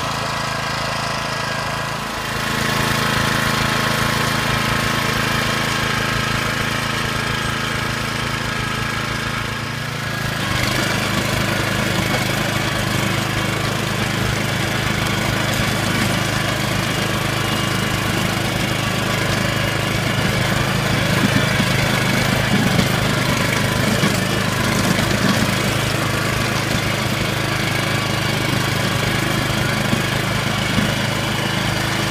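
Engine of an Agria walk-behind motor hoe (rotary tiller) running steadily as its tines churn through rain-soaked, heavy soil. It gets louder about two seconds in and again about ten seconds in, as the tiller works the wet ground.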